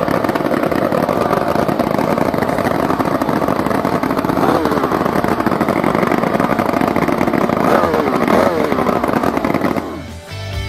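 Vintage racing outboard motor with open megaphone exhaust stacks running loudly and unmuffled. Its pitch swoops up and back down briefly at about four and a half seconds and again around eight seconds in, as the throttle is blipped.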